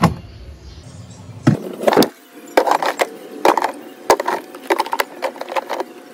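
Cardboard milk cartons being set down and shuffled into place on a refrigerator shelf: a series of light knocks and scrapes, roughly two a second.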